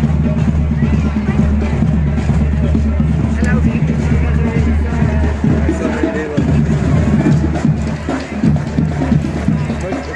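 Marching band music, drums and brass, as the band moves off down the street, with people in the crowd talking close by.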